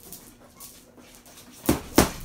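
Boxing gloves hitting a hanging heavy bag: two quick punches near the end, the second one the louder thud.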